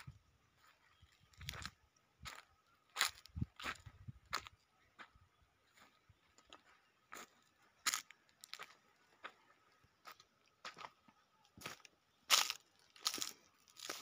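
Footsteps crunching on dry fallen leaves, coming as irregular separate crunches with a pause of a couple of seconds midway.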